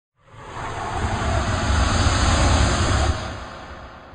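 Noise-swell sound effect for a news logo: a rushing whoosh with a deep rumble that builds over about a second and a half, holds, then dies away after about three seconds.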